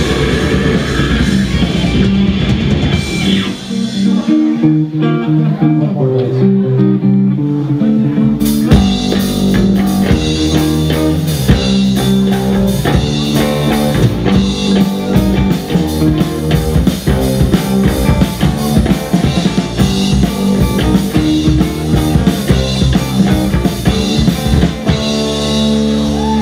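Heavy metal band playing live: distorted electric guitars, bass guitar and drum kit. About four seconds in the drums and low end drop out and the guitars play alone, then the full band with drums crashes back in at about eight and a half seconds and carries on.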